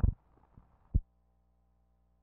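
Two dull, low thumps about a second apart, with a fainter one between them, then a faint steady electrical hum.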